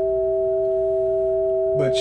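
Two steady, plain electronic tones held together on a synthesizer keyboard: a G and the E above it, played in equal temperament tuning.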